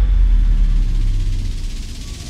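A deep, loud low rumble from the trailer's sound design, holding steady with a faint low hum on top, then fading away through the second half.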